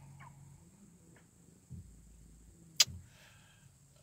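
Quiet pause with a faint low hum, a soft thump a little under two seconds in, and one sharp click near three seconds in.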